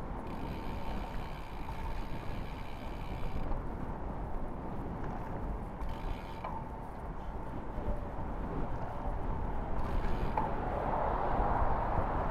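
Road-bike riding noise: steady wind rush over the microphone and rumble from the tyres on tarmac. A high buzz sounds through the first few seconds and again briefly midway, and the noise grows louder near the end.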